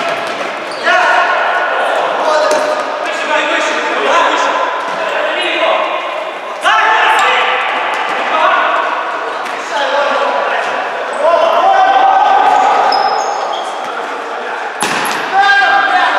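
Futsal players shouting calls to each other in a sports hall with an echo, over the knocks of the ball being kicked and bouncing on the wooden court. The loudest knock comes about a second before the end.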